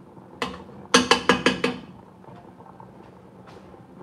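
A metal spoon tapped about five times in quick succession against the rim of an aluminium saucepan, each tap ringing briefly, after a single tap a little earlier.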